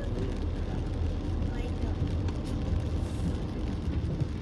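Cabin noise of a Tata Punch driving on a wet road: a steady low rumble of engine and tyre noise, with hiss from the tyres on the wet surface.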